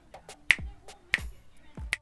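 A short snapping beat: three strong finger snaps about two-thirds of a second apart, each with a deep thud under it, and fainter clicks in between.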